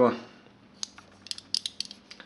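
Loose slider of a cheap Chinese 150 mm vernier caliper clicking as it is worked back and forth: one light metal click, then about half a dozen in quick succession in the second half. The slider wobbles on the beam and its upper jaws keep catching on each other.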